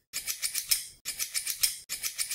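Bursts of crisp rattling ticks, about seven quick ticks in each, repeating once a second with short silences between.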